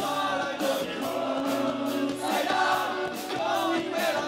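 Live rock band playing loud on electric guitar, electric bass and drum kit through a stage PA, with a male voice singing over it from about two seconds in.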